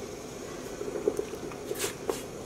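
Hot acid-dye bath in a steel pot, bubbling and sloshing softly as a knitted wool sock blank is lowered into it, with a sharp click near the end.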